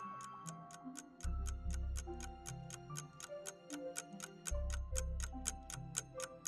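Countdown music for a quiz timer: a fast, even ticking beat over slow held melody notes, with a deep bass coming in about a second in.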